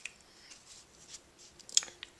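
Playing cards being cut by hand: faint card clicks and slides, with one sharper click near the end.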